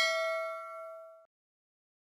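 Notification-bell "ding" sound effect from a subscribe animation, several bright bell tones ringing on after the strike and cutting off abruptly about a second in.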